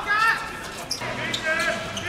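Football players shouting on the pitch: several short raised calls, with a few short knocks among them.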